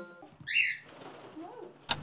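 A cockatiel gives one short, shrill chirping call about half a second in, as the last note of background music dies away. A single sharp click sounds just before the end.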